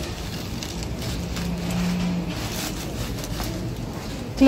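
Steady background noise with light rustling and handling sounds as bunches of artificial flowers are moved about, and a short low hum briefly in the middle.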